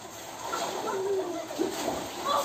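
A child's drawn-out, wavering call, then water splashing near the end as a boy goes into the water tank.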